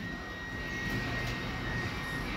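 Steady whooshing background noise with a faint, steady high-pitched tone running through it, in a lull in the show audio.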